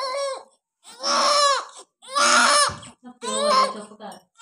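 Newborn baby crying in a run of short wails, each under a second and rising then falling in pitch, the middle ones loudest.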